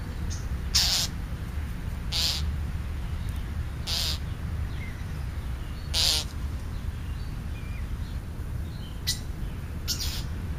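Wild birds calling at a backyard feeding spot: a short, harsh call repeated four times about every two seconds, then once more near the end, with faint small chirps in between, over a steady low rumble.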